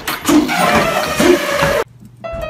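A group of men yelling and whooping loudly in excitement, with one long falling yell. It cuts off suddenly near the end.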